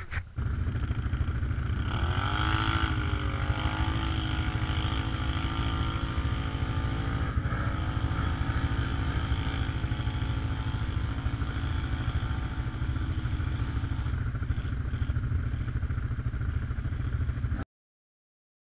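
ATV engine revving up about two seconds in, then held at a steady high pitch under load, with a brief dip in revs about seven seconds in. It cuts off suddenly near the end.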